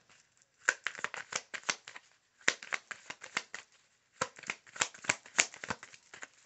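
A deck of tarot and oracle cards being shuffled by hand, in three short bursts of rapid clicks with brief pauses between.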